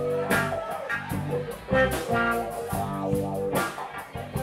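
Live rock band playing: electric guitar over bass, keyboards and a drum kit, with regular drum and cymbal strikes.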